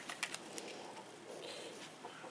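Faint rustling of synthetic landscaping fabric being folded and handled, with a few light clicks near the start.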